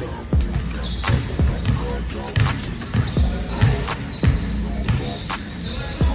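Basketballs bouncing on a court floor in irregular thumps, with short sneaker squeaks as players run and cut, over background music.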